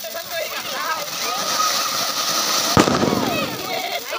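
Diwali fireworks hissing as they spray sparks, with a steady whistle-like tone through the middle and one sharp firecracker bang about three quarters of the way through, over children's voices.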